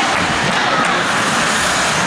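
Indoor ice hockey game noise: a steady wash of sound from skates cutting the ice and the echoing arena, with a few faint shouts from players or spectators.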